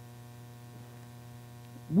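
Steady electrical mains hum: a low, even buzz with evenly spaced overtones.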